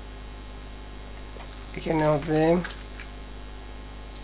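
Steady electrical mains hum picked up by the recording microphone. About two seconds in, a man's voice makes a brief vocal sound in two short parts, not words.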